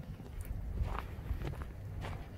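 Footsteps crunching on a thin layer of snow over a gravel track, at a steady walking pace of about two steps a second.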